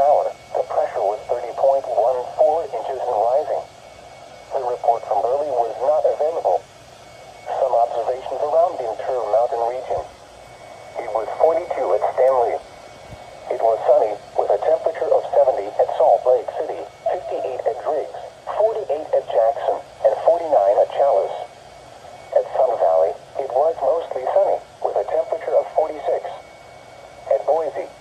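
An automated NOAA Weather Radio voice reading weather observations for towns, heard through the small speaker of a Midland weather alert radio. The sound is thin and narrow, and the voice speaks in phrases with short pauses between them.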